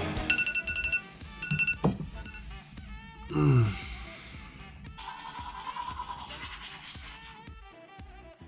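A phone alarm beeping in short pulses of a steady high tone over the first two seconds, then a loud downward-sliding sound about three and a half seconds in, with background music underneath.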